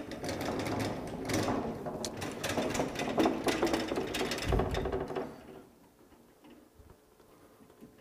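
Wheeled Hunter DAS 3000 ADAS calibration fixture being rolled slowly across the shop floor, a fast mechanical rattle from its casters and frame. The rattle stops about five and a half seconds in, when the stand comes to rest.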